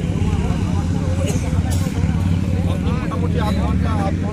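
Several people talking at once in the open, over a loud, steady low rumble.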